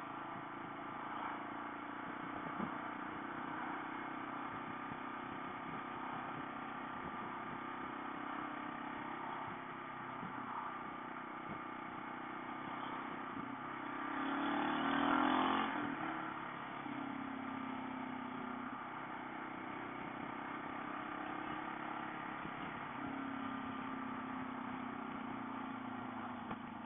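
Motorcycle engine running steadily at cruising speed, with wind and road noise picked up by a camera mounted on the bike. About halfway through, an oncoming vehicle passes, bringing a short swell of noise that rises and falls.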